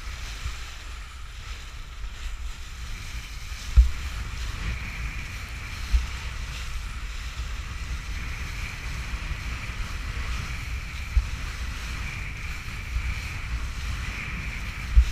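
A kiteboard planing over choppy water: steady wind rumble on the microphone and rushing water, with a few sharp thumps as the board hits chop, the loudest about four seconds in.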